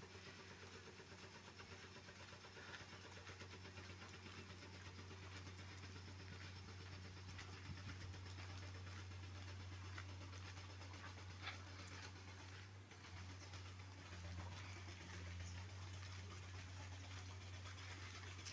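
Faint, steady low engine hum of a motor vehicle running at low speed, growing a little louder toward the end.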